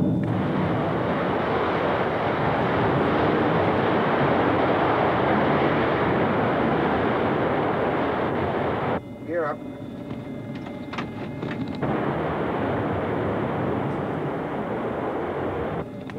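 Jet airliner engines at takeoff power: a loud, steady rush of noise that cuts off abruptly about nine seconds in, leaving a quieter steady cockpit noise with a short burst of radio voice.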